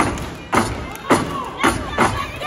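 Loud rhythmic thumps, about two a second, keeping the beat of a stage dance routine, with audience voices calling out over them.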